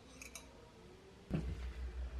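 A few light clicks, then about a second and a half in the two metal halves of a stovetop waffle pan clap shut with a clack, followed by a steady low rumble.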